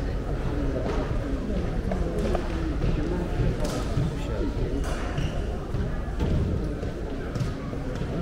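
Indistinct chatter of many visitors echoing in a large hall, with no single voice standing out, and occasional knocks or footsteps scattered through it.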